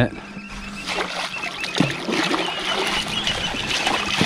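A striped bass thrashing at the surface beside the boat as it is held for release by hand, splashing the water, getting louder in the second half.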